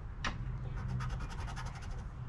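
The edge of a poker chip scraping the scratch-off coating off a $20 Gold Rush Classic lottery ticket in quick, repeated strokes.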